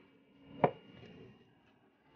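A single sharp knock of a hard object, like something set down on a kitchen counter or stove, about half a second in, followed by faint handling noise.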